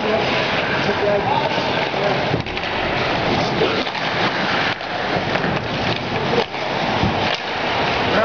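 Ice hockey game in play in a rink: voices calling out over a steady, dense noisy din of play on the ice.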